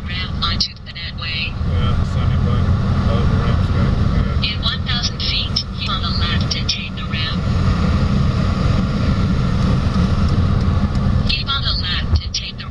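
Steady low rumble of road and engine noise inside a car cabin while driving at motorway speed.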